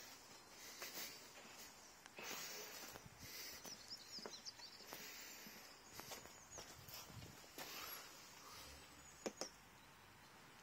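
Near silence: faint background noise with a few soft, high bird chirps around the middle and a few soft clicks, one a little louder near the end.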